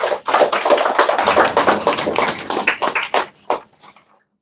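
A small audience applauding: a spatter of overlapping hand claps that thins out to a few last single claps about three and a half seconds in.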